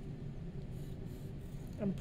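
Faint scratching of a graphite pencil drawing strokes across a sheet of paper, over a low steady room hum.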